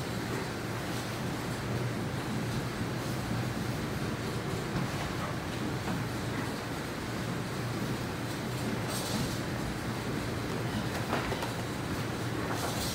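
Turbine-driven gristmill running: the flat belt, big spoked pulley and millstones grinding corn with a steady low rumble. A brief hiss comes about nine seconds in.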